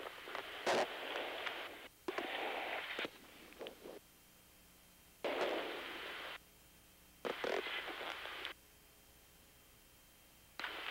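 Hiss on an open intercom or radio channel, switching on and off abruptly four times with a few faint clicks, as headset microphones key open and closed.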